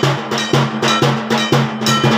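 Dhak drums beaten in a fast, even rhythm of about four strokes a second, with a brass gong or bell ringing on the beat: typical Durga Puja drumming.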